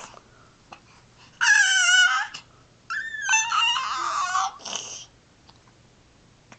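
Baby squealing twice: a short high call with wavering pitch about one and a half seconds in, then a longer one from about three seconds, followed by a short breathy sound.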